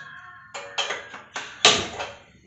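A gas stove burner being lit with a hand-held spark lighter: four sharp clicks within about a second and a half, the last the loudest, over background music.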